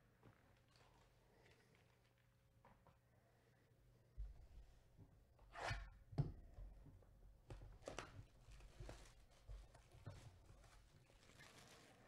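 Faint handling sounds of gloved hands moving a sealed cardboard trading-card hobby box on a table: soft knocks and rustles that begin about four seconds in, the loudest two around six seconds in.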